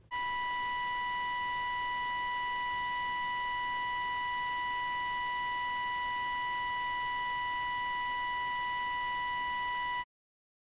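A steady electronic beep tone at one unbroken pitch, held for about ten seconds and cutting off suddenly at the end.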